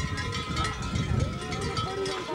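Many large metal bells worn by Surva mummers (survakari) clanging and ringing continuously, with people talking among them.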